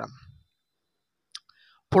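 Speech trails off into silence, broken by a single short click about a second and a half in and a few faint small noises, before speech starts again at the very end.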